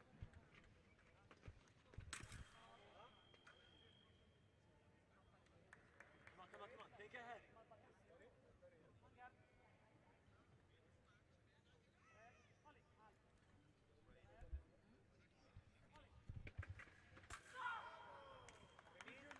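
Faint sounds of a sabre bout in a large hall. About two seconds in, a sharp click is followed by a steady high beep lasting about two seconds: the scoring machine signalling a touch. A second beep starts near the end, over faint voices and footsteps on the piste.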